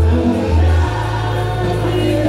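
Gospel praise-and-worship music: a choir singing over low held bass notes that change every second or so.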